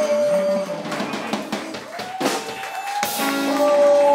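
Live blues band playing: electric guitars and drum kit, with a woman singing long held notes, the second pitched a little higher and sustained for a couple of seconds.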